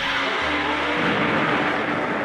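Special-effects sound of a ray beam striking a monster: a loud, steady hissing rush, with music underneath.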